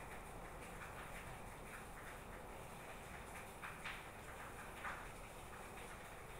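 A few faint clicks from a small circuit board and an electrolytic capacitor being handled, over a steady low hum.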